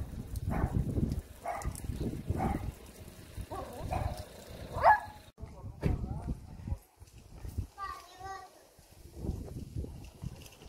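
Footsteps on a paved street, about one a second, over wind rumbling on the microphone. About eight seconds in comes a brief high-pitched call.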